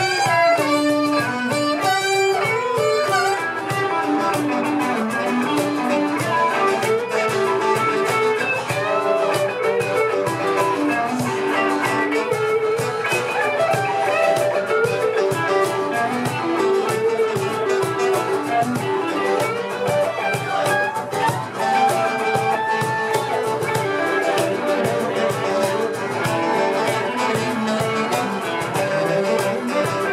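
Live band playing an instrumental passage: guitar melody lines moving quickly over strummed guitar and a steady beat, with no singing.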